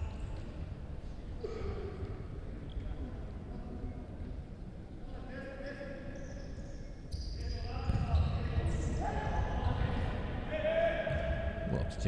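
Futsal being played in an echoing indoor sports hall: players shouting and calling to each other, louder from about halfway through, over the ball hitting the wooden court floor.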